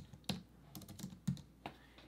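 Computer keyboard being typed on: a handful of quiet, irregularly spaced keystrokes as a word is entered.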